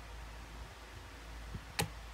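A single sharp plastic click near the end as the battery is pressed into a Ryze Tello drone. The drone powers on by itself when its battery is inserted.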